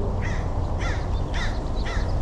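A bird calling over and over, short harsh calls about two a second, four in all.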